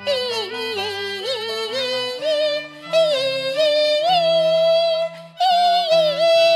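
A woman singing a Cantonese opera melody, her voice wavering with vibrato over instrumental accompaniment, with two short breaks in the line.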